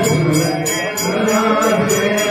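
Devotional aarti chanting sung to a steady beat of metal percussion struck about three times a second.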